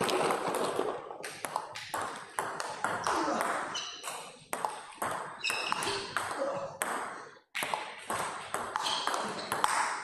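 Table tennis rally: a fast run of sharp clicks as the celluloid ball is struck by the rubber paddles and bounces on the table, with a short break about seven and a half seconds in. A few brief high squeaks of shoes on the court floor come between the hits.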